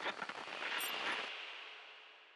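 A burst of crackling noise from an edited transition sound effect, swelling about a second in and then fading away.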